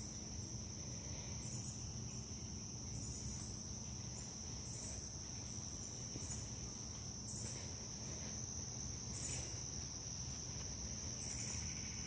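Insects calling in the garden: a steady high trill throughout, with a second, higher call repeating about every one and a half seconds over it.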